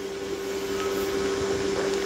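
A steady hum held at one pitch, growing slightly louder.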